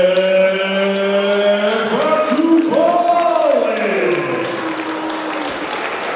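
A ring announcer's amplified voice drawing out a boxer's name in long, held, sung-out syllables, the pitch rising about two seconds in, then sliding down and fading out by about four seconds.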